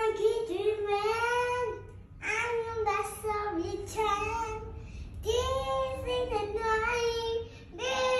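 A young boy singing unaccompanied in long phrases with held, wavering notes. He pauses for breath about two seconds in and again about five seconds in.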